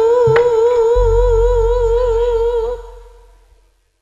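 A female tayub singer (sinden) holds one long note with a wide, even vibrato over gamelan accompaniment, with a sharp drum stroke just after the start and a deep low boom from about a second in. The note and music fade out to silence near the end.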